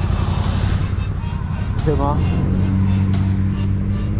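A car driving past close by, its tyre and engine noise swelling in the first second, over a steady low engine hum.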